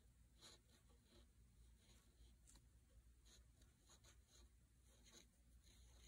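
Felt-tip pen writing on paper: faint, short strokes at irregular intervals.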